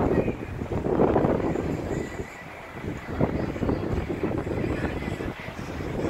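Wind buffeting the phone's microphone in uneven gusts, easing off for a moment partway through.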